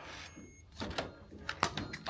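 Hotel door's key-card lock and metal lever handle being worked, a few short sharp clicks in the second half as the latch releases and the wooden door is opened.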